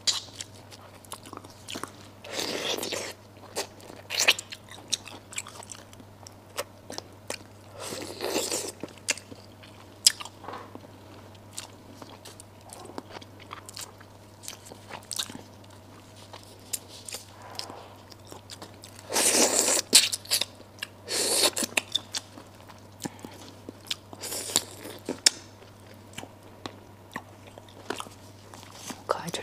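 Close-miked eating of braised duck head: wet chewing with many small crisp clicks and crunches of bone and cartilage, and several louder sucking sounds of about a second each as meat and sauce are sucked off the bones and fingers.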